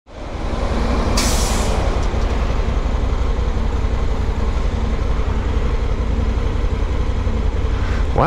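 Motorcycle engine idling steadily, heard from the saddle as a deep rumble, with a short hiss about a second in.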